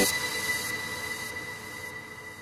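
Background music breaks off at the start, leaving a fading tail that holds a thin, steady, high-pitched tone.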